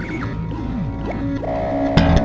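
Instrumental music built around an electric bass guitar, with sliding notes and a held note that comes in about one and a half seconds in.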